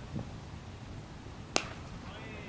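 A single sharp crack of a cricket ball striking the bat, about one and a half seconds in, over faint outdoor background noise.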